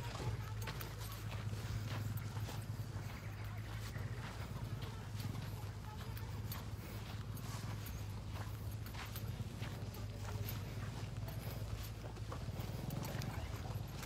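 Footsteps and phone handling while walking on the pond bank: irregular soft knocks and clicks over a steady low hum.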